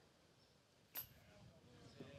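Near silence: faint outdoor ambience, with one short, sharp click about a second in.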